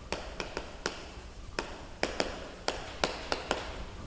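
Chalk tapping on a blackboard while writing: about a dozen short, sharp, irregular taps as the strokes of the characters go down.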